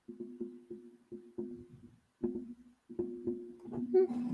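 A microphone being knocked again and again: about a dozen thumps at an uneven pace, each with a short ringing tone, sounding like bongos.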